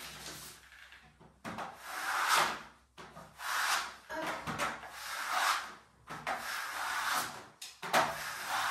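Metal drywall spatula scraping joint compound up an inside corner of plasterboard, in about five long strokes with short pauses between them.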